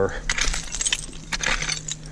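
Hand digging tool raking and scraping through dump soil mixed with broken glass and stones, giving a quick run of small clinks and scratches.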